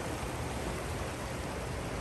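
Fast-flowing river water rushing steadily over a stony bed, an even, unbroken rush.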